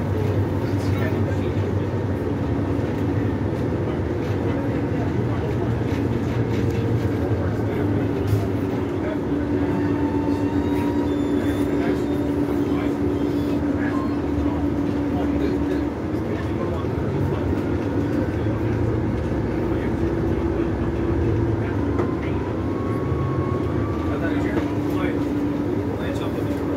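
Inside a moving transit bus: the engine and drivetrain run steadily over low road rumble, with a whine whose pitch steps up and down a few times as the bus speeds up and slows.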